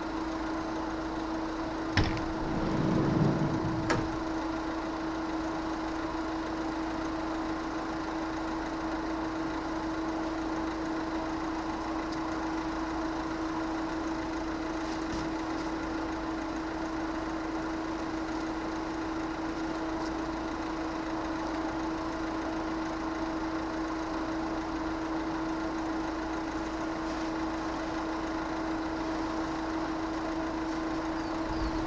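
Steady hum of an idling engine, with a sharp knock about two seconds in followed by a brief low rumble, and another knock about four seconds in.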